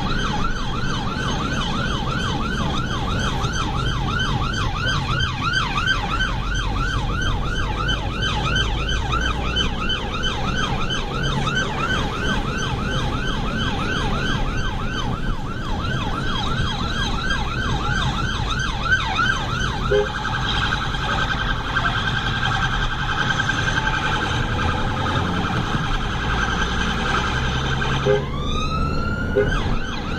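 Emergency-vehicle siren on an NHS blood service response vehicle, heard from inside the cabin: a fast, repeating yelp, changing about two-thirds of the way through to a quicker tone, then a rising wail near the end, over engine and road noise.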